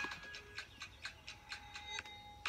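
Background music: a light melody of short struck or plucked notes.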